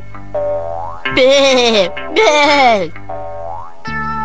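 Cartoon background music of held tones, with two loud drawn-out vocal sounds about a second and two seconds in, and short rising comic sound effects of the 'boing' kind.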